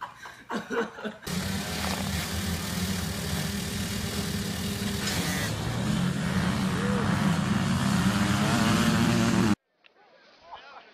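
Several dirt-bike engines running and revving together, growing louder after the middle and cutting off suddenly near the end. It follows about a second of laughter.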